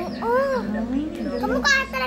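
A young child's voice, vocalizing in short rising and falling pitches, with a higher-pitched cry near the end.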